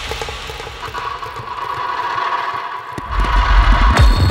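Opening of a dark psytrance track: a held synth tone with sparse textures over a thinned-out low end, then a pounding kick drum and bassline come in about three seconds in.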